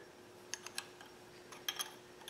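Faint metallic clicks of an open-end wrench on the bolts at the camshaft gear as they are snugged: a few light ticks about half a second in and a few more near the end.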